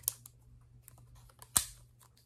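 Handling noise from a ruler held by a rubber band across a round salt container as it is turned in the hands: a few light ticks and one sharper click about one and a half seconds in.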